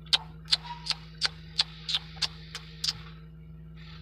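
A series of sharp ticks, about three a second, stopping about three seconds in, over a steady low hum.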